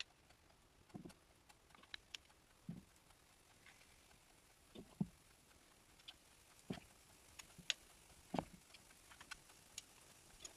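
Faint, scattered clicks of two metal spoons tapping together as dollops of thick kefir pancake batter are scraped off into a frying pan of oil, with a few soft low knocks between them.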